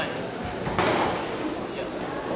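A single sharp slap of a boxing glove landing, a little under a second in, among a coach's shouts from ringside.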